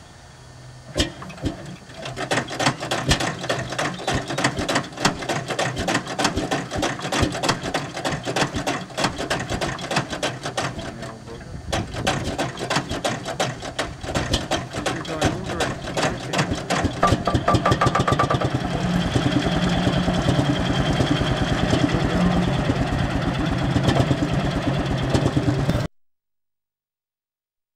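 Lanz Bulldog's single-cylinder two-stroke hot-bulb engine catching after being swung over by its flywheel, firing in uneven knocks at first. It falters about eleven seconds in, then picks up into a faster, louder, steady beat.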